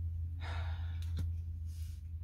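A woman sighs, a breathy exhale lasting about half a second, starting about half a second in, followed by a short hiss of breath near the end, with a couple of faint clicks. A steady low hum runs underneath.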